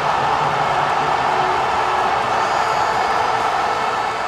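Loud, steady rushing noise, like static or a long whoosh, from the sound design of a closing title sequence.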